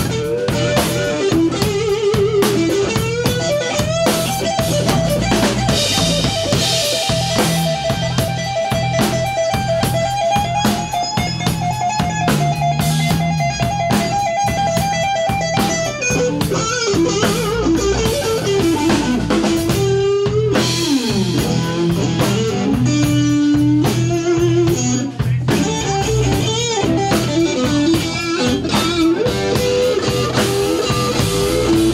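Live blues band playing: an electric guitar takes the lead over a drum kit and a steady low bass line. The lead holds one long sustained note for about twelve seconds, drifting slightly upward, then moves into shorter phrases.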